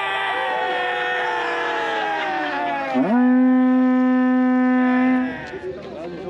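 A group of voices, children and a man, yelling together, their pitch sliding down. About three seconds in, one deep voice swoops up and holds a single long, loud yell for a couple of seconds before it breaks off.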